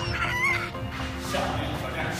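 A man's high-pitched, wavering cries of pain, which end about half a second in. Quieter background music follows.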